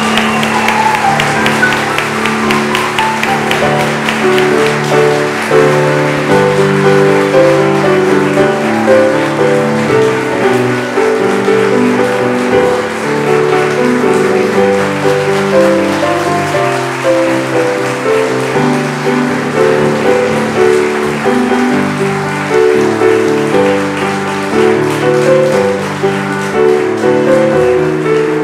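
Instrumental music with slow, held notes, and guests applauding under it, the clapping thinning out over the first half.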